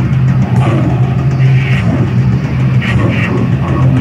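Loud, dense noisy grindcore recording: heavily distorted guitar over a steady low drone, with rough bursts of higher noise coming and going every second or so.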